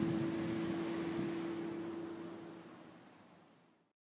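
Outdoor seashore ambience: a steady low engine-like hum over a noisy wash, fading out to silence shortly before the end.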